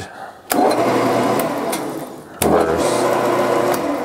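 Metal lathe switched on in forward: its electric motor and belt-and-gear drive start up about half a second in and run with a whirring hum and light rattling clicks. Near the end it begins to wind down.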